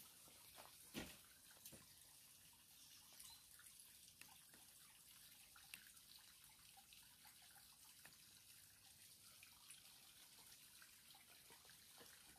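Near silence with a faint trickle and drips of overflow water running into a stone tunnel shaft, and a single soft click about a second in.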